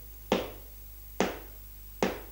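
Two sharp percussive taps just under a second apart, keeping an even beat: a count-in before a song on the classical guitar.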